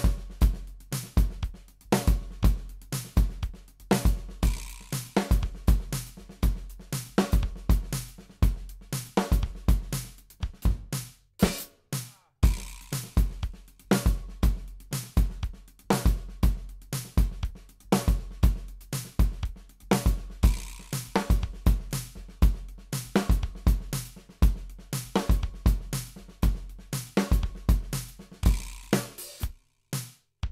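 Drum kit played live: a steady groove of bass drum, snare and hi-hat strokes, one practice variation run into the next, with a short break about twelve seconds in. The playing stops just before the end.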